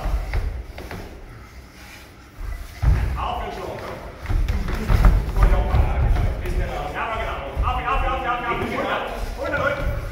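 Two fighters grappling on a padded cage mat: repeated dull thuds and shuffling of bodies on the foam floor, under indistinct shouted voices.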